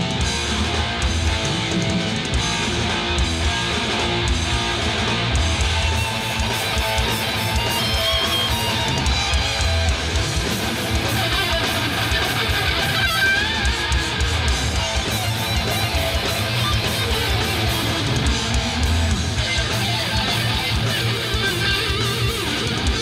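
Heavy metal band playing live: an electric guitar lead over distorted rhythm guitar, bass and drums, with gliding bent notes about 8 and 13 seconds in.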